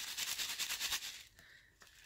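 Shaker bits and sequins rattling inside a handmade shaker card's clear window as the card is moved and shaken: a quick, dense rattle that fades out after about a second and a half.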